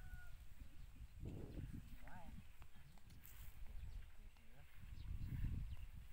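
Outdoor field ambience: low, uneven rumbling that swells about a second in and again near the end, with a few short chirps about two seconds in.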